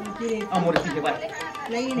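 Speech only: men talking in conversation.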